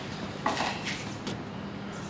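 A single light knock or clink about half a second in, fading quickly, over a faint steady hum and hiss.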